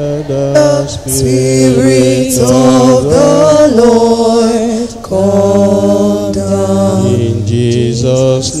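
A church chant-like hymn invoking the Spirit of the Lord, sung in long held notes by a man's voice amplified through a microphone. There are short breaks between phrases about a second in and again about five seconds in.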